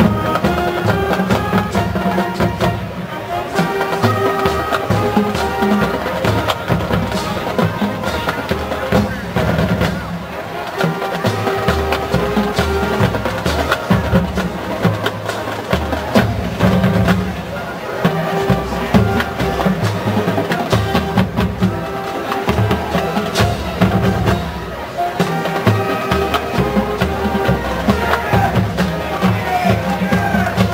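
Marching band playing: a brass melody over a steady beat of snare and bass drums, striking up at the very start.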